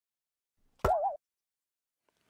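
Cartoon sound effect about a second in: a sharp pop followed by a short boing whose pitch wobbles up and down, cut off abruptly after about a third of a second. Silence around it.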